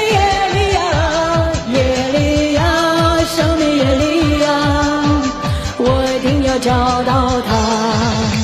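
A woman singing long held notes into a microphone over a pop dance backing track with a steady, fast kick-drum beat.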